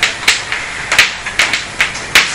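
Writing on a board by hand: a quick, irregular series of sharp taps, about three a second.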